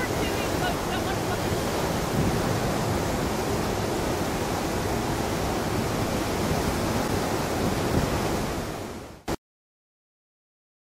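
Whitewater rapids rushing steadily, a loud, even wash of water noise that fades out and then cuts off about nine seconds in.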